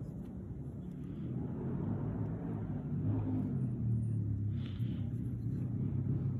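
A low, steady motor rumble with a hum, growing louder from about a second in.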